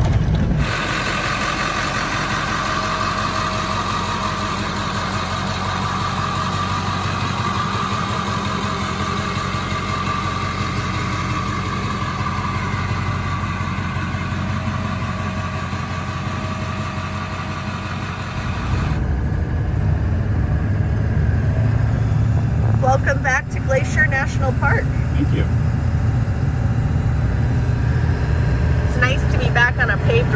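Cab noise of a Ford Super Duty pickup with a 7.3 L Power Stroke V8 turbodiesel, driving: steady engine and tyre noise on a muddy dirt road. About 19 s in the sound changes abruptly to a louder, deeper road rumble.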